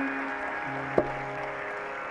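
The final sustained notes of a Carnatic mandolin duet dying away slowly, with one sharp percussive stroke about a second in.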